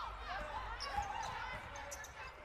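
A basketball being dribbled on a hardwood court, its bounces faint, with the echo of a large gym.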